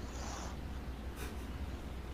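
Steady low hum on the call line, with a short soft rustle near the start and a brief hiss a little over a second in.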